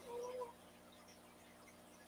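A faint drawn-out vocal hum trailing off the end of speech for about half a second, then near silence.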